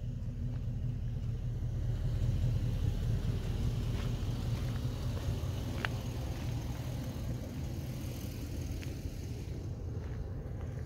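Pickup truck driving, a steady low rumble of engine and road noise, with a couple of faint ticks in the middle.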